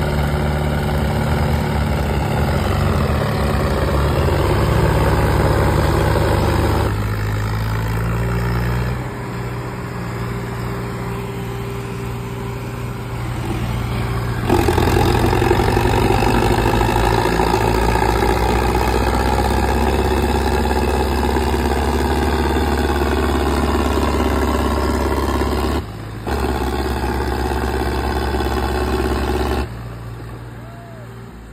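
Diesel tractor engines, a three-cylinder Sonalika DI 50 and its opponent, running hard at full throttle, pulling against each other in a tug-of-war with black smoke pouring out. The engine note jumps abruptly several times.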